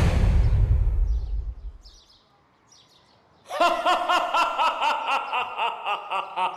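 A dark film-score swell, heavy in the bass, dies away over the first two seconds into near silence. About three and a half seconds in, a dense run of quick, high chirping calls starts abruptly, several a second.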